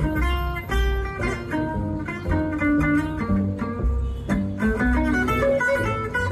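Gypsy-jazz acoustic guitar, Selmer-Maccaferri style, playing a quick run of single picked notes in an instrumental break, with low bass notes underneath.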